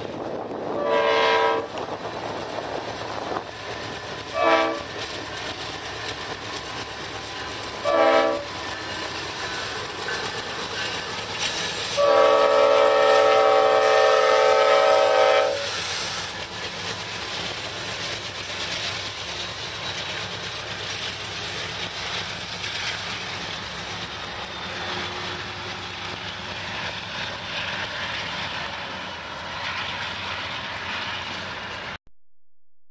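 Leslie RS-5T five-chime air horn on a Norfolk Southern GE C40-9W locomotive sounding four blasts: three brief ones, then one held for about three and a half seconds, blown for a road crossing. The locomotives then pass close by, with steady engine and rail noise.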